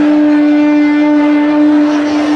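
Alphorn holding one long, steady note.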